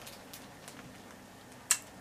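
Plastic mailer bag being handled, giving a few faint ticks and one sharp crinkling click near the end.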